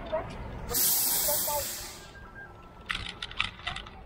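A loud hiss of air released by a heavy truck's air brakes, lasting about a second, followed by a few light clicks.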